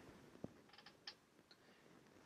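Near silence: room tone, with a faint click about half a second in and a few faint ticks around a second in.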